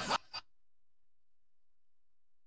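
Near silence: the speech and music cut off abruptly just after the start, and after a faint blip almost nothing is heard.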